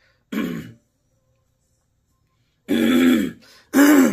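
A man clearing his throat and coughing in three short bursts: one about a third of a second in, then two louder ones near the end, with silence between.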